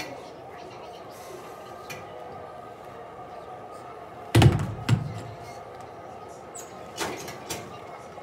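A pair of heavy dumbbells set down hard on the gym floor at the end of a bench-press set: two loud thuds about half a second apart midway through, then two lighter knocks near the end.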